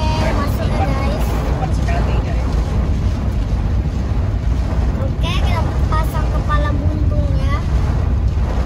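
Steady low rumble of a car heard from inside its cabin. A voice speaks softly near the start and again from about five seconds in.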